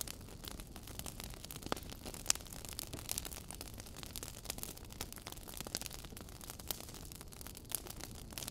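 Faint hiss with scattered small crackles and clicks, a few sharper ones standing out.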